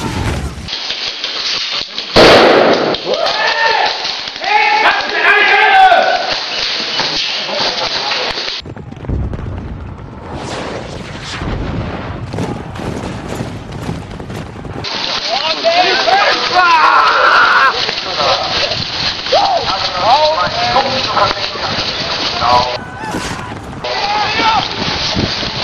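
Battle-scene soundtrack: a loud cannon-like blast about two seconds in, then men's voices shouting. After that comes low rumbling with scattered sharp cracks of gunfire, then more shouting voices.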